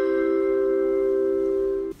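Aircraft cabin announcement chime: the tones of a rising multi-note chime ringing on together at a steady level, then cut off abruptly just before the end.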